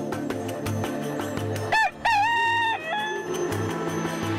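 A rooster crows once, about two seconds in: a short rising note, then a long held note that drops off at the end, over steady background music.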